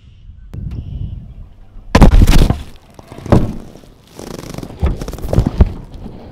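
A video camera toppling over: a loud crash about two seconds in, then more knocks and rattles as it comes to rest, with a louder cluster of knocks near the end.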